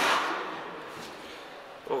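A man's voice at the very start and again near the end, with a soft hiss fading away in between.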